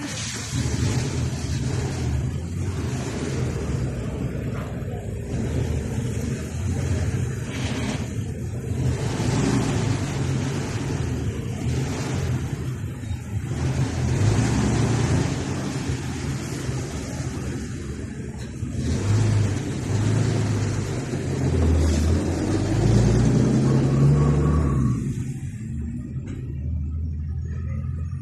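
Street traffic: car engines running and cars driving past, with an engine rising in pitch near the end.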